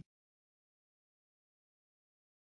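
Digital silence: a pause between spoken vocabulary words.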